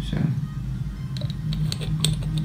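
Screw-on spray head of a Jour d'Hermès perfume tester being threaded back onto the glass bottle neck: a quick run of faint, sharp clicks in the second half.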